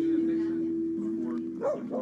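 A steady low tone holds, then fades about one and a half seconds in as a dog gives a couple of short yips.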